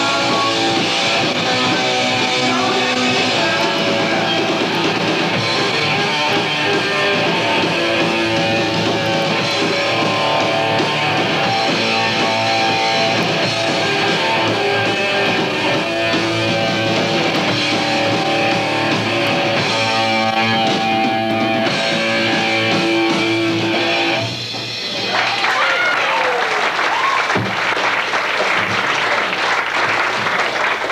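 A hardcore punk band playing live: loud, distorted electric guitar, bass and drums. The music drops briefly about 24 seconds in, then carries on noisier, with a falling tone over it.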